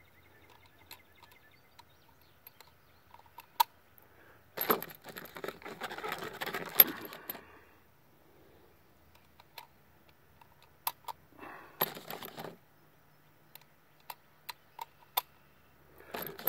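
Steel-cased 7.62×39 cartridges being handled and pushed one at a time into an SKS rifle's magazine: scattered sharp metallic clicks, with two longer stretches of rattling and rustling about five and twelve seconds in.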